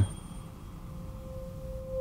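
A single steady pure tone held at one pitch with a faint overtone. It fades in shortly after the start and swells near the end, a sound-design tone under the narration.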